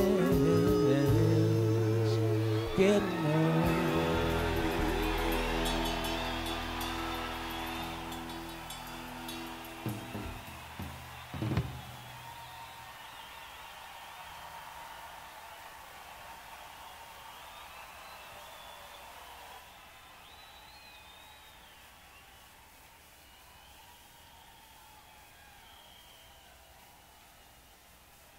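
A live rock band's final held chord rings out on a soundboard feed: guitar and bass tones sustain and fade away over about twelve seconds, with two short knocks near the end of the fade. After that only faint background noise remains between songs.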